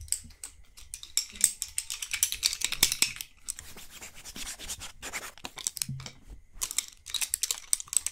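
Fast, irregular scratching and rubbing on cloth right at the microphone. The strokes are busiest in the first half and again near the end, with a sparser stretch between.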